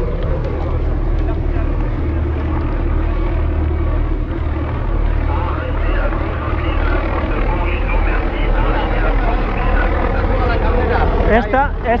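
Wind rumbling steadily over the microphone of a camera mounted on a moving road bike.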